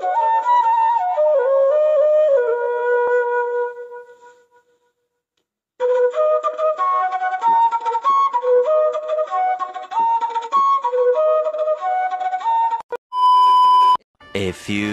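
Flute music playing a stepwise melody, which fades out about four seconds in and starts again after a short silence. Near the end a single steady tone is held for about a second.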